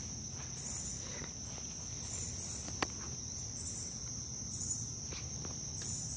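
A steady, high-pitched chorus of insects, with a higher chirp repeating about once a second. Faint footsteps and one sharp click about halfway through.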